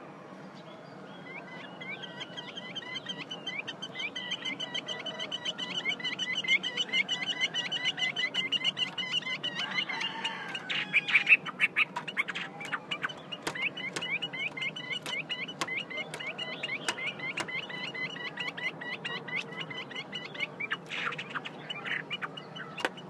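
Female Chinese hwamei giving a long, rapid run of short chattering 'te' notes, the call bird keepers use to rouse male hwamei. The run breaks off about halfway, sharp clicks fill the gap, and then the run resumes.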